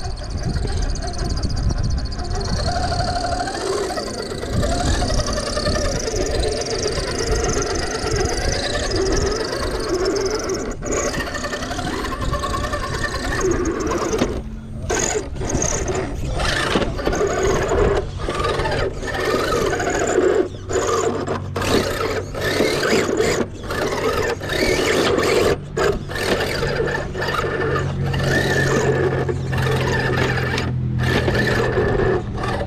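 Scale RC rock crawler's electric motor and drivetrain whining as it climbs over boulders, with tyres scrabbling on rock. In the second half the sound stops and starts in many short bursts.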